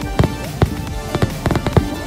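Aerial fireworks bursting: a quick string of sharp bangs, several a second, with music playing underneath.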